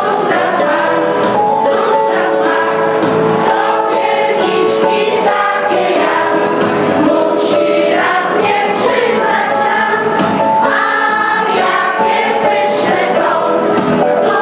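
An amateur choir of older singers, mostly women, singing a Polish Christmas carol (kolęda) together with no break, the notes held and moving step by step.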